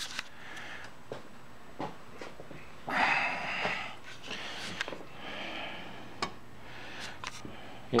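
A few light clicks and knocks as a BMW K75/K100 rear drive is handled and fitted up to the rear wheel hub. A breathy hiss about three seconds in is the loudest sound, with a fainter one a couple of seconds later.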